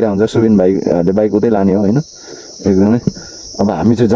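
A man talking, with a steady high-pitched insect drone running under his voice. The drone is plain in a pause in the talk about two seconds in.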